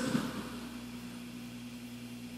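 Pause in speech: a steady low hum with faint hiss from the room and sound system, with the echo of the last spoken word dying away in the first half-second.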